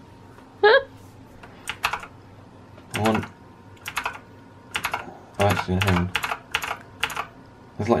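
Keys of an RGB-backlit mechanical keyboard clicking under the fingers in small irregular bursts, a few presses at a time rather than steady typing. A brief voice sound comes under a second in.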